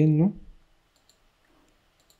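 A man's voice speaking briefly at the start, then a few faint, short clicks of a computer mouse about a second in.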